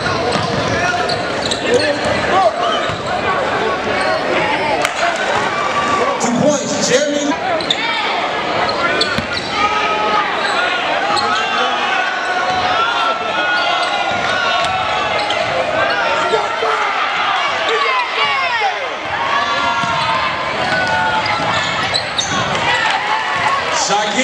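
Live basketball game sound in a gym: a basketball being dribbled on the hardwood floor and sneakers squeaking, over a steady din of crowd voices and shouts.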